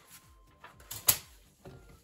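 Handling noise as a spiral-bound notebook is moved aside, with one sharp knock about a second in, as of the notebook being set down on the table.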